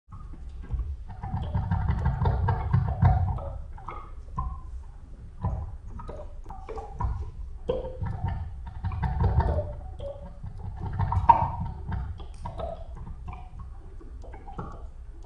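Amplified potted cacti played by hand, their spines plucked and stroked. The sound is an irregular patter of clicks and scratches over low thuds, swelling and thinning in several uneven bursts.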